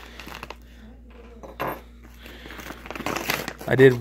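Brown paper mailing envelope being torn open and crinkled by hand: a few short rips and rustles, the loudest about one and a half seconds in.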